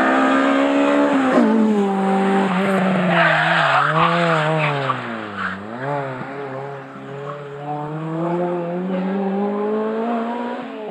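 Honda Civic Type R rally car braking hard into a tight chicane: the engine note drops over the first second or so as it slows. There is a burst of tyre skid noise about three seconds in. The engine then revs up through the gears as the car accelerates away.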